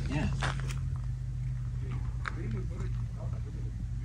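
Portable 12-volt air compressor running with a steady hum, inflating air mattresses.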